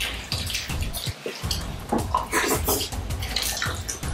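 Close-up wet chewing and lip-smacking of people eating fried plantain with vegetable sauce: a rapid, irregular run of soft clicks and smacks.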